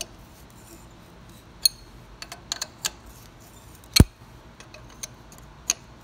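Irregular metal clicks and clinks of a wrench working a double-nutted stud out of a turbocharger turbine housing clamped in a vise, with one sharper metallic knock about four seconds in.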